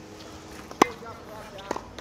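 Tennis ball struck by rackets during volley practice: a sharp pop a little under a second in and a fainter one near the end.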